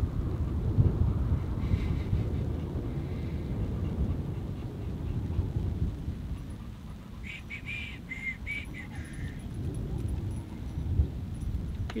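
Wind rumbling on the microphone, with a dog giving a short run of high whines about seven seconds in.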